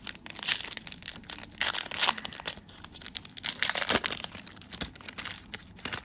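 Foil wrapper of a Donruss Elite football card pack being torn open and crinkled by hand, in irregular crackling bursts of tearing and rustling.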